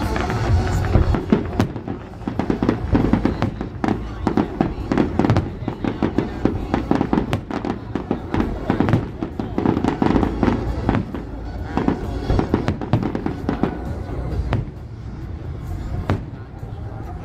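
Aerial fireworks display: a rapid, irregular series of bangs and crackles from shells bursting overhead.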